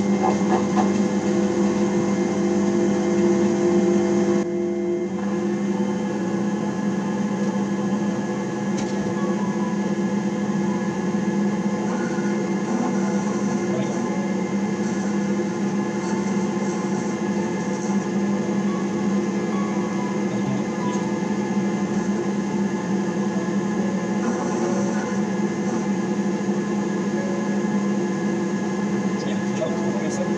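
Small metal lathe running under power: motor and spindle gearing give a steady hum with a whine, its tone shifting slightly about four to five seconds in.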